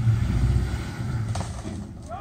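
Pickup truck engine running under load as it pulls on a tow strap, a low rumble that eases off over the two seconds.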